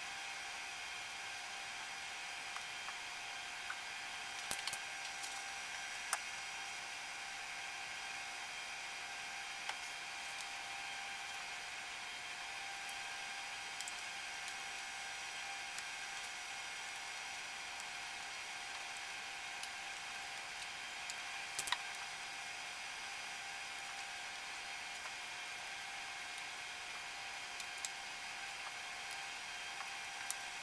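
Steady background hiss with faint whining tones, broken by a few light clicks and knocks, the sharpest about four and a half and twenty-one and a half seconds in. The clicks and knocks come from hands working a timing belt onto the engine's pulleys.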